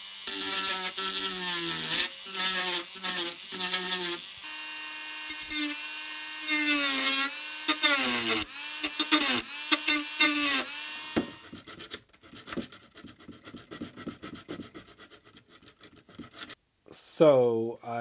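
Small corded rotary tool cutting down a protruding plastic part of an Amiga 600 case: a whining motor, run in bursts, whose pitch dips and recovers as the bit bites into the plastic, for about the first eleven seconds. After that, quieter scraping and clicking of the trimmed plastic being handled.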